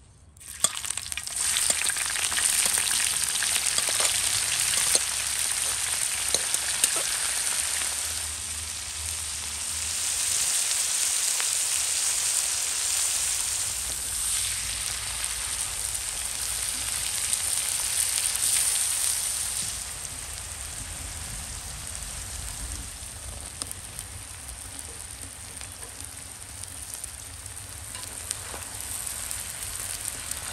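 Sliced onions hitting hot oil in a wide shallow pan, bursting into a loud sizzle about half a second in and then frying steadily while a metal spatula stirs them, with small scraping clicks. The sizzle eases a little about two-thirds of the way through but keeps going.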